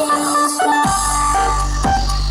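Loud electronic dance music played through the Guntur Buana 'horeg' speaker stacks with subwoofers; a deep, steady bass drops in a little under a second in under held synth tones.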